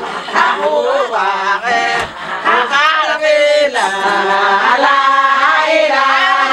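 A group of women singing a chant together, several voices overlapping, with a short spoken exclamation near the end.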